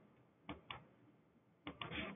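Faint clicks of a computer mouse, in two quick pairs: one about half a second in and one near the end.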